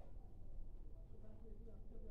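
Quiet pause in a small room: low steady hum of room tone, with no distinct event.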